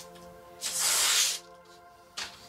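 A bristle hand brush sweeping across a tabletop: one hissing stroke, just under a second long, starting about half a second in.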